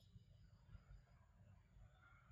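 Near silence, with only a faint low rumble in the background.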